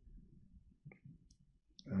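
A single faint click of a computer mouse button about a second in, followed by a couple of fainter ticks.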